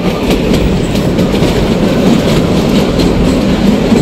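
Kalka–Shimla narrow-gauge toy train running, heard on board: a loud, steady rumble with the wheels clattering over the rails.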